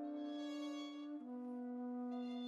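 Slow, soft chamber music for flute, violin and piano, mostly long held notes. The lower held note steps down a little just over a second in.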